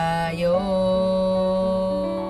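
A solo voice singing over a backing track: a short sung phrase, then one long held note from about half a second in.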